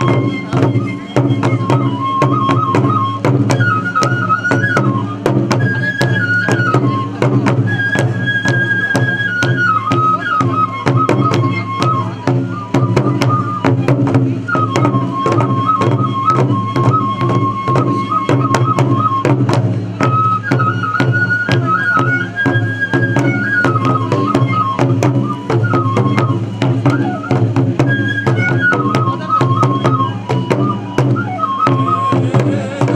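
Hōin kagura music: two large barrel drums (taiko) beaten in a fast, steady stream of strokes, under a high transverse flute (fue) playing a repeating melody that steps between a few held notes.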